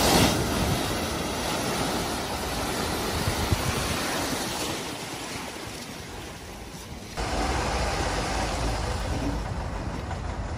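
An SUV ploughs into deep floodwater with a loud splash, then water rushes and surges around it as it wades through. About seven seconds in, the sound cuts to a lower, steadier rumble from the stopped car, whose engine has swallowed water and is hydrolocked.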